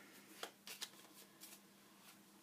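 Near silence with a few faint, irregular clicks of tarot cards being handled.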